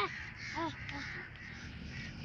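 Crow cawing: one caw at the start, then two or three fainter, shorter caws about half a second apart in the first half.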